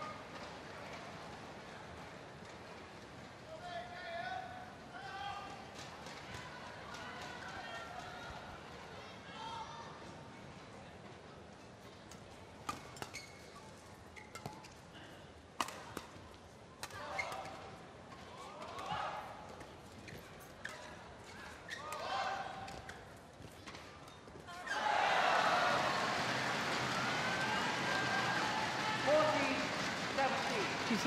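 A badminton rally: a string of sharp racket-on-shuttlecock strikes in the middle, after scattered calling voices in an arena. About 25 seconds in, the crowd breaks into loud cheering as the point is won.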